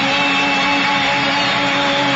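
Arabic orchestra holding one long steady chord at the close of a live song, over a dense noisy hiss.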